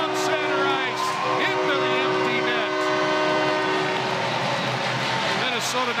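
Arena goal horn sounding a steady multi-tone chord right after a goal, over crowd noise; it cuts off about four seconds in.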